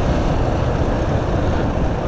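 Honda Biz underbone motorcycle riding along a street: a steady rush of wind on the microphone over the small engine and road noise.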